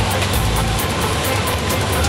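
Loud, dense outdoor noise at a building fire: a deep steady rumble under a rough hiss, with music mixed in.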